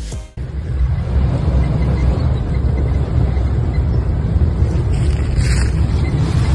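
Background music cuts off just after the start, then the engine of a Lexus GX470, a 4.7-litre V8, runs with a steady low rumble as the SUV works through a deep off-road rut.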